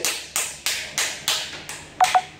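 Butter knife tapping repeatedly on the shell of a cooked mud crab claw, about three sharp taps a second. The taps crack a line in the shell so the claw meat can come out in one piece.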